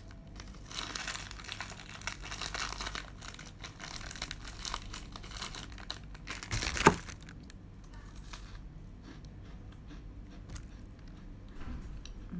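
Foil-lined plastic snack packet crinkling and tearing as it is pulled open by hand and teeth, then rustled while the snack is taken out, with one sharp click about seven seconds in.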